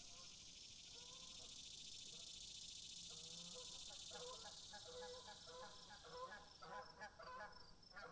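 Faint honking bird calls that repeat and come more often from about three seconds in, over a steady high hiss that stops near the end.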